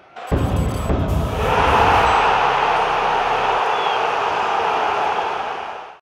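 Channel logo sting: a deep low hit about a third of a second in, then a dense, steady wash of noise that fades out at the end.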